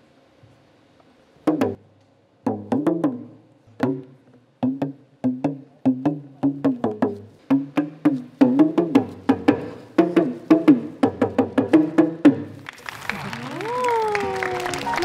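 Kalangu, the hourglass-shaped talking drum, struck with a curved stick, its pitch bending up and down between and within strokes as the tension cords are squeezed. After a short silence the strokes start sparse and build into a fast, dense rhythm, which stops about twelve seconds in and gives way to applause.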